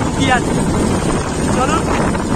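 Steady rush of wind on the microphone over the rumble of a moving open vehicle, with short snatches of voices twice.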